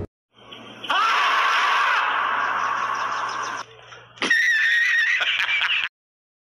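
Screaming in two long, shrill stretches. The second is higher and wavering in pitch and cuts off suddenly.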